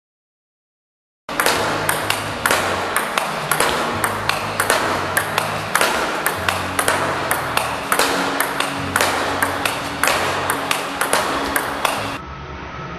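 Table tennis ball in fast rally-style play against a Returnboard rebound board: quick sharp clicks of bat strikes, table bounces and rebounds off the board, with a loud hit roughly twice a second. It starts about a second in.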